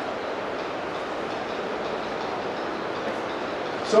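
Steady, even background noise with no speech: room or microphone hiss.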